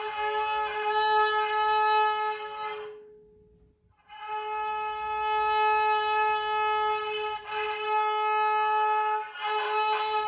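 Violin played on the open A string, a single steady note held through long, slow bow strokes of a few seconds each, with short breaks at the bow changes. This is a beginner's first open-string bowing, the bow guided by the teacher's hands.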